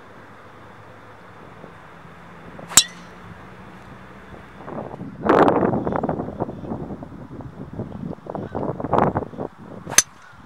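Sharp clicks of a golf club striking the ball, one about three seconds in and another at the very end. Between them, from about five seconds in, a loud stretch of rough, uneven noise.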